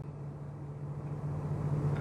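Steady low hum and background noise inside a car cabin, most likely the car's engine running. It grows slightly louder toward the end.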